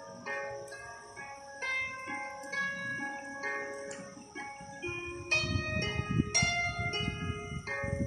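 Harp music playing, a melody of plucked notes that ring and fade one after another. From about five seconds in, a low rustling rumble comes in under the music and is louder than it.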